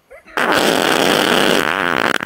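A loud, drawn-out fart sound, starting about a third of a second in and running on without a break.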